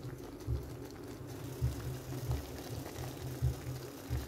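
Pot of chicken noodle soup simmering, with a steady low bubbling hiss and soft low bumps every half second or so.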